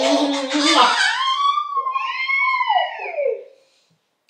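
A woman's drawn-out "mmm" hum as she kisses a toddler's cheek. It is followed by the toddler's high-pitched, wavering squeal, which rises and falls for about two seconds.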